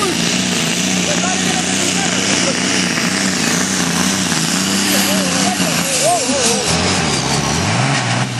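Engine of a pulling tractor running loud and steady at high revs during a pull, its pitch falling about six seconds in as it slows, with voices heard over it.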